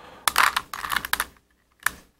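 Plastic Rubik's Cube being twisted by hand: a quick run of clicking turns lasting about a second, then a single click near the end.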